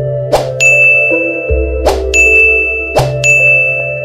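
Three sharp bell-like dings about a second and a half apart, each ringing on in a high clear tone, over a slow sustained music bed with a deep bass note.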